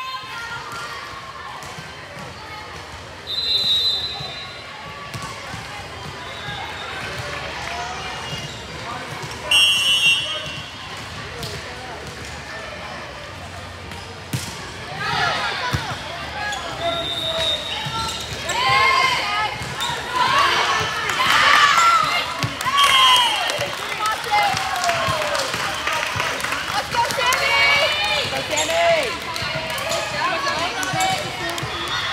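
Indoor volleyball rally in a large hall: a short high referee's whistle about ten seconds in, then ball contacts and sneaker squeaks on the hardwood court. From about halfway in, many players and spectators are shouting and cheering.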